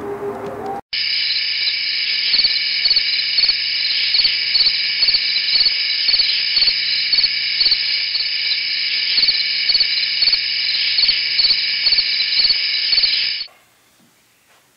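Chirping chorus of night insects such as crickets, a steady high trill pulsing two or three times a second. It starts suddenly about a second in and cuts off abruptly near the end, like a laid-in night-ambience track.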